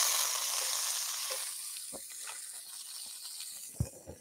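Butter sizzling in a hot straight-sided sauté pan (sautoir), the hiss starting strong and fading gradually over a few seconds. A light knock near the end.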